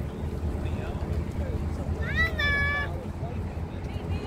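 Outdoor beach background of steady low rumble. About two seconds in comes one high-pitched call that rises at its start and then holds for about a second.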